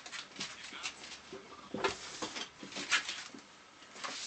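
Bang & Olufsen Beosound 9000 CD changer mechanism working: a string of irregular clicks mixed with short squeaky whirs.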